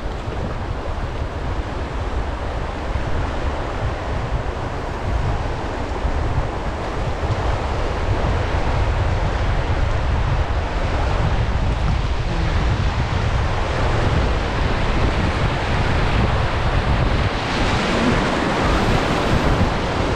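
Rushing whitewater of a river rapid, with wind buffeting the microphone in a low rumble. The water noise grows louder and brighter over the last few seconds.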